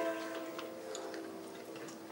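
The last strummed chord of a small ukulele-sized string instrument ringing out and slowly fading at the end of a song, with a few faint clicks.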